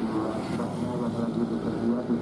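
A Mitsubishi dump truck's diesel engine running with a steady drone as the truck rolls slowly along a potholed road.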